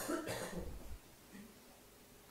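A short breathy throat sound from a person, a soft cough or exhale, fading out within about the first half second, followed by near silence.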